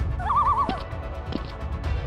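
Background music with a short, wavering whinny sound effect near the start, lasting about half a second.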